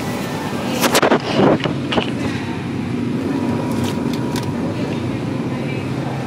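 Steady low hum of a supermarket's background noise, with a few sharp knocks and clicks about a second in.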